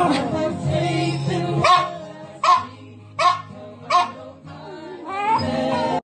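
A small long-haired dog howling along to music: a falling howl at the start, then four short yips about 0.7 s apart, and a rising howl near the end.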